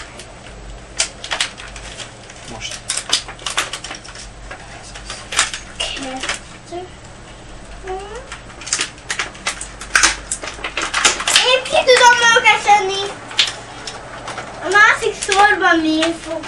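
Rapid, irregular sharp clicks and clatter of small hard objects being handled, like plastic toy parts being fitted and pulled apart. A young child's high voice rises over them, loudest about eleven seconds in and again near the end.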